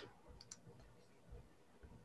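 Near silence: faint room tone over a call's audio, with a couple of faint clicks about half a second in.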